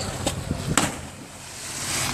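A person plunging into harbour water after a backflip jump off a pier: one sharp splash about three quarters of a second in, followed by a hiss of noise that grows toward the end.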